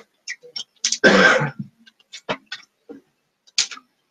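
A person coughs once, harshly, about a second in, the loudest sound here, amid scattered short clicks and hisses.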